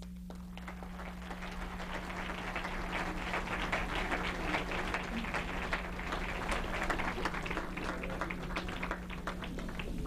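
Audience applauding in a hall, the clapping building over the first few seconds, then easing slightly toward the end.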